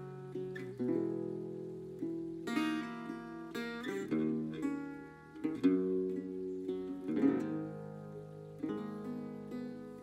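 Metal-bodied resonator guitar strummed and picked in an instrumental passage without singing. Chords ring out with a twangy, banjo-like tone, with a new strum about every second.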